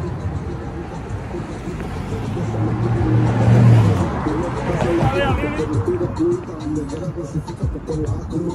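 A car passing close by on a city street: its noise swells to a peak just under four seconds in and then fades. Street traffic and voices carry on around it.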